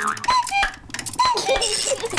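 Cartoon cuckoo clock calling "cuckoo" twice, each call a falling two-note, among light mechanical clicks, with a bright high jingle near the end. The clock is working again after being mended.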